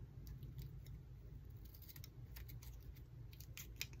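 Faint scratching and small irregular ticks of a craft knife blade cutting around a sticker on its sheet, over a low steady hum.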